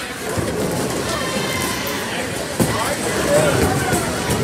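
Bowling alley hubbub: indistinct voices over a steady low rumble, with one sharp knock about two and a half seconds in.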